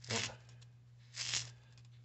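Thin D2-steel knife blade slicing through a foam packing peanut: a short scraping sound of the edge cutting the foam about a second in.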